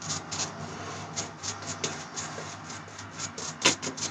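Safety razor with a Treet blade scraping through lathered stubble: several short strokes a second or so apart, over a low steady hum.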